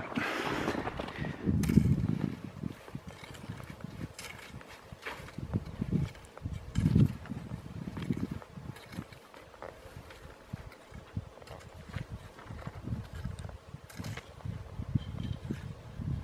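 Footsteps plunging and crunching through deep snow, slow and uneven, roughly one step a second.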